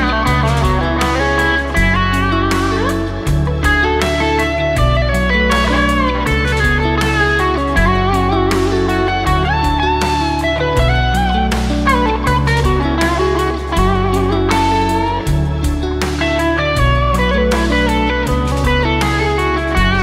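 A Gibson Custom Shop Murphy Lab '56 Les Paul reissue goldtop with P90 pickups playing an electric lead line with bent and vibratoed notes over a backing jam track with bass and drums.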